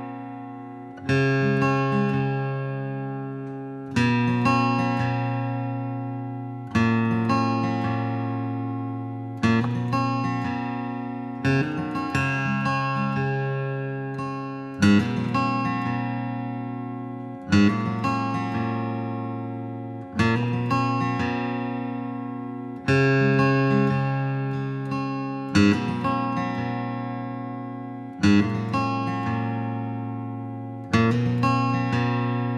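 Background music: acoustic guitar strumming slow chords, one strum about every two and a half to three seconds, each left to ring out and fade before the next.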